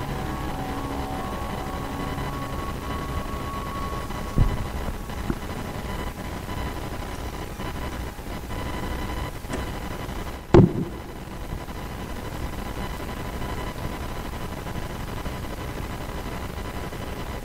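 The karaoke backing track's last notes fading out over the first few seconds, leaving a steady background hiss with a faint steady high tone. Two dull thumps cut through it, a small one about four seconds in and a louder one about ten seconds in.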